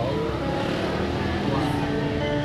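Live song from a woman singing into a microphone with electric guitar accompaniment, with held notes and a heavy low rumble underneath.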